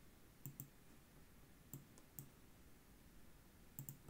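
Faint computer mouse clicks, several short sharp ones, some in quick pairs about a tenth of a second apart, against quiet room noise.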